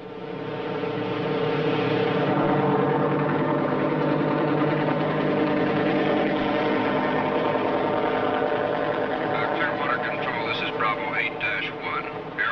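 Helicopter engine and rotor running steadily as it flies low, swelling in over the first second or two. A voice comes in near the end.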